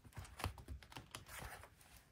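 Pages of a paper planner being turned and handled by hand: a string of faint paper rustles and light taps.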